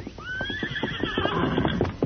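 Radio-drama sound effect of a horse whinnying: one long neigh that rises in pitch at the start and then wavers before dying away near the end, over a run of hoof clops.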